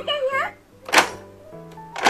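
Battery-powered Anpanman toy activity table playing its electronic sound: a high, wavering recorded character voice and electronic tones, with one sharp click about a second in.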